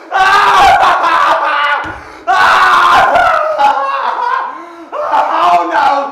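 Actors' voices in three loud, high-pitched shouted outbursts, screaming cries rather than spoken lines, about two seconds apart.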